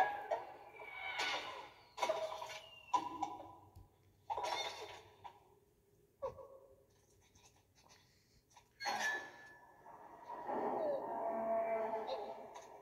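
Sound effects from an animated film trailer, played through a television's speakers and picked up across the room: a string of short, sudden hits and swishes, some with brief ringing tones. A quieter stretch comes just past the middle, and the sounds pick up again near the end.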